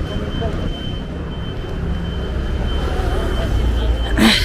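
Street background noise: a motor vehicle's low engine rumble that grows louder toward the end, under faint chatter of passers-by, with a thin steady high tone throughout.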